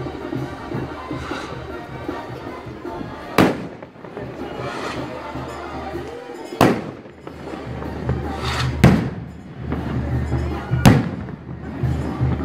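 Fireworks going off over a procession: four sharp, loud bangs a few seconds apart, each echoing briefly. Band music with a steady low beat plays underneath.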